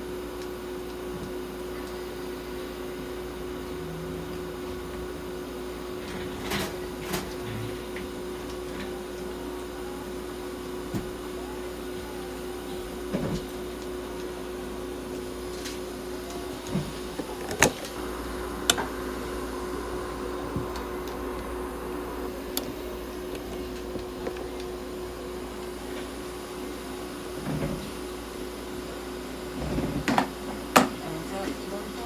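Steady hum of a veterinary ICU unit running, with a constant low tone from its warming, humidifying and oxygen equipment. A few short sharp clicks and knocks are scattered through it, the loudest a little past halfway.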